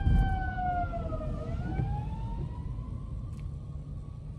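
Emergency-vehicle siren wailing, its pitch sliding slowly down for the first second and a half, then rising back up. It is heard from inside a car's cabin over the low rumble of the engine and road.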